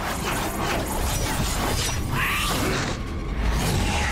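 Animated film trailer sound effects: a dense run of quick clicks and rattles over a steady low rumble, with a short bending tone about two seconds in.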